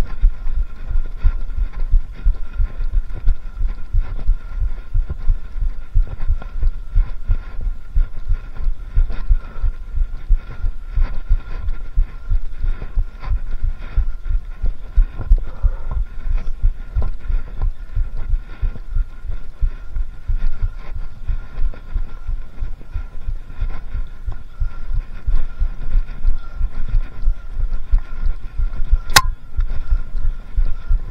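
Irregular low thudding and rumble from a bike-mounted action camera jolted as a mountain bike is pushed uphill over rough forest ground, with one sharp click near the end.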